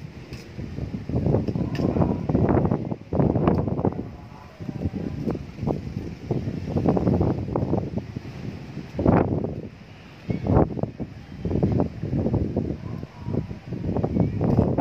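Gusty wind buffeting the microphone, coming in irregular low rushes that rise and fall every second or two.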